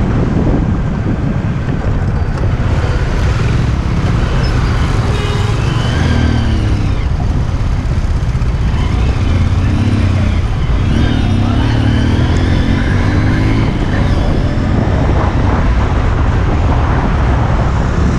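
Steady, loud wind rumble on the microphone of a motorbike moving at speed, over scooter engine and road-traffic noise.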